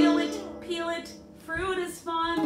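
A ukulele chord strummed at the very start and left ringing, fading away over about a second. A woman's voice comes in briefly twice.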